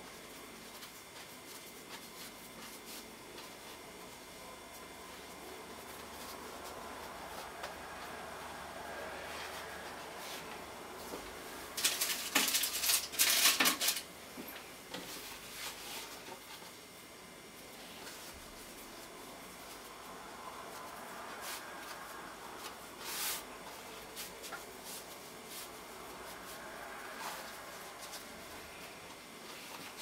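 Soft rubbing and sliding of hands rolling filled dough triangles into croissants on a floured board. About twelve seconds in there is a louder spell of sharp clicks and rustling lasting about two seconds, and a single short sharp sound near twenty-three seconds.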